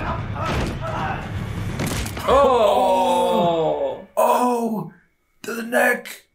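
Film fight-scene sound, a low rumble with several sharp knocks of blows, then a man's loud, drawn-out groan that falls in pitch, followed by a shorter vocal cry. The sound cuts off abruptly about five seconds in.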